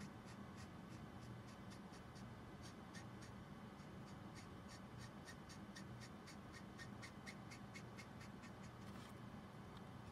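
Copic Sketch marker's brush nib stroking back and forth on smooth blending card while colouring: faint, quick scratchy strokes, several a second.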